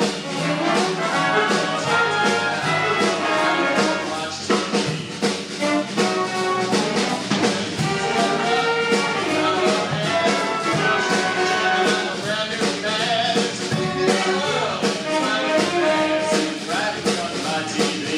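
A live jazz big band playing, with saxophones, trombones and trumpets over a steady drum beat and rhythm section.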